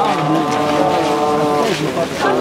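A male reciter chanting a mourning lament into a microphone in long, drawn-out notes. The pitch falls away near the end.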